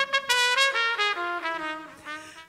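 Live jazz band with a brass instrument playing a descending phrase of separate notes that fades away.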